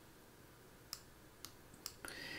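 Near silence broken by four faint, sharp clicks in the second half, from a computer mouse clicking as annotations are drawn on screen.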